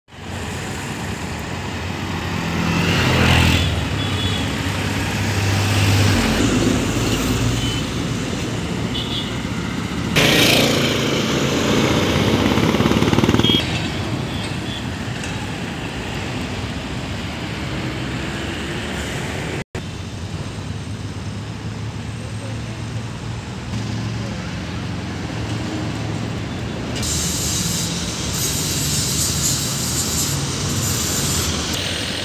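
Road traffic: engines of trucks, auto-rickshaws, motorbikes and cars passing over a steady roadway hum. Vehicles pass louder a few seconds in, and again for about three seconds starting around ten seconds in. The sound drops out briefly about two-thirds of the way through.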